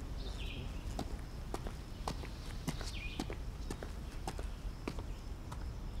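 Quiet outdoor ambience: a bird calling twice, once near the start and once about halfway, over a low steady rumble, with a dozen or so scattered sharp clicks.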